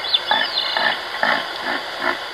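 Reindeer grunting: four short grunts, about two a second.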